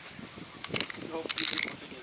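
Small toy car's wind-up gear mechanism whirring and clicking as it is run on concrete, in two short bursts, the second longer. The toy still works, just before it breaks.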